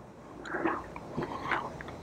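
A person chewing basil leaves: soft, irregular crunching.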